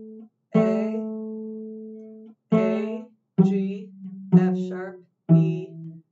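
Cello played pizzicato: single plucked notes, each struck sharply and fading away. A long-ringing note comes first, then four shorter ones about a second apart that step down in pitch.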